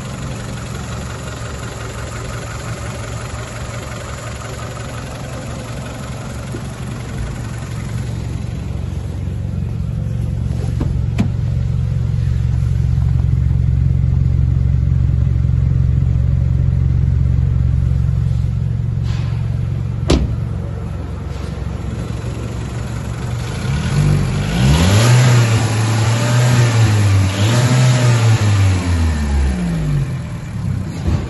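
Volkswagen Polo Mk5's 1.4-litre CGGB four-cylinder petrol engine idling steadily, then revved several times near the end, the pitch rising and falling with each blip. A single sharp click sounds about two-thirds of the way in.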